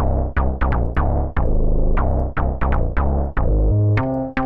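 Softube Monoment Bass synth playing a looped bass line of short, sharply starting notes, several a second and changing in pitch. Two sample sources are layered, 'Dark Monster' and 'Truck FM Radio'.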